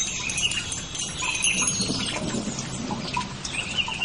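Meditation soundscape: soft tinkling chimes with short, high, warbling chirps over a steady background.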